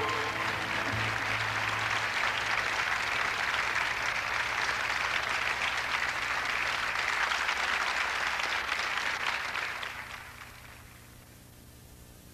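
Studio audience applauding, with the band's final low note dying away in the first couple of seconds. The applause fades out from about ten seconds in.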